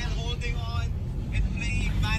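Steady low rumble inside a car cabin, with faint voices over it.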